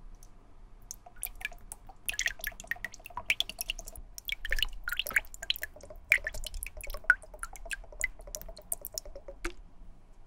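Water and sneaker cleaner dripping and trickling into a small silicone tub of water: quick, irregular splashing drops. They thicken about a second in and stop shortly before the end.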